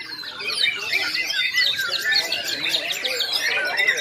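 Many caged white-rumped shamas (murai batu) singing at once in a contest class: a dense, continuous tangle of overlapping whistles, trills and chirps.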